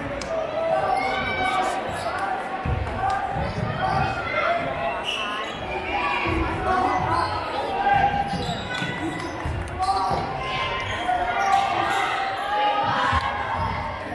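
Basketball dribbled on a hardwood gym floor during live play, a string of repeated thumps, with sneakers squeaking on the court and players' and spectators' voices in a large gym.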